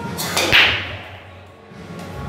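Pool break shot: a crack as the cue drives the cue ball, then, about half a second in, a loud sharp clack as the cue ball smashes into the racked balls. A scattering clatter of balls knocking together and rolling follows and dies away.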